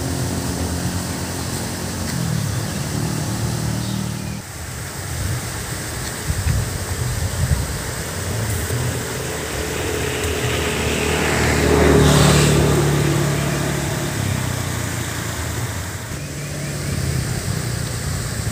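Road traffic: motor vehicles running on the road, with one passing that swells to its loudest about twelve seconds in and then fades.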